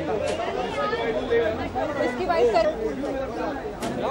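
People talking, several voices going at once.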